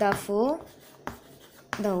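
Chalk on a blackboard: a sharp tap and light scraping as dots and letters are written, between short stretches of a teacher's voice.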